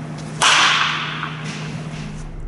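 Baseball bat striking a ball: one sharp crack about half a second in, with a short echo trailing off through the hall.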